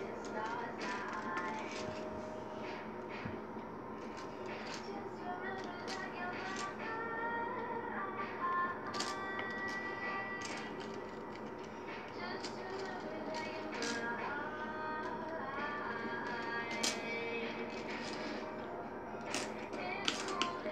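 Light plastic clicks and clatter of Barrel of Monkeys toy monkeys being handled and hooked together on a tile floor, over faint background music.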